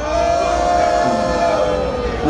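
A long held vocal note that rises slightly and then eases back down.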